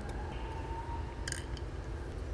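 Quiet steady room hum with one short, faint scrape a little past halfway as the vacuum pump's filler cap is twisted off.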